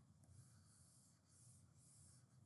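Faint scratching of a stylus drawing on a tablet, in three short strokes, over low room hum.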